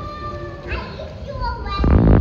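Young children's high-pitched calls and squeals while playing in a swimming pool, with water splashing around them and a louder burst of sound near the end.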